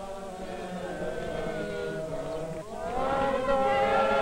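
A group of voices singing a slow chant in sustained notes, fading in and growing louder about three seconds in.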